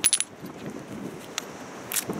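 Small pieces of old ceramic tile clinking against one another as they are handled and set in place: a quick cluster of bright clinks at the start, then single clicks about one and a half seconds in and near the end.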